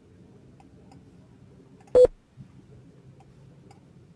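A single short, loud beep about two seconds in, over faint steady background hum with soft ticking.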